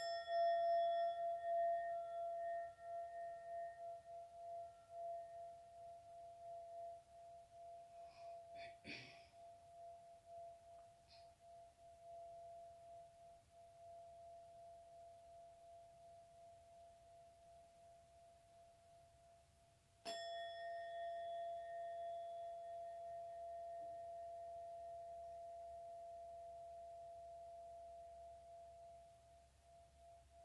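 Hand-held brass singing bowl struck twice with a felt mallet, at the start and again about twenty seconds in. Each strike rings on in one clear tone with a gentle slow wobble and fades away slowly. A short soft noise is heard about nine seconds in.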